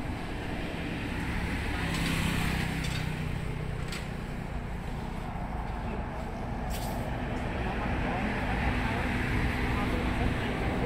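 Road traffic on a two-lane highway: motorbikes and other vehicles passing with a steady low engine rumble, growing louder toward the end as a vehicle approaches.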